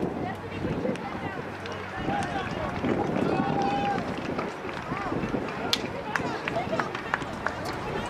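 Open-field sound of a soccer match: distant, unintelligible voices calling and shouting across the pitch, one call held briefly about three and a half seconds in. A few sharp knocks cut through, the loudest about six seconds in.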